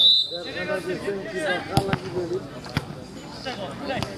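A football being kicked on an artificial-turf five-a-side pitch: sharp thuds, two close together a little under two seconds in and another about a second later, under the players' shouts.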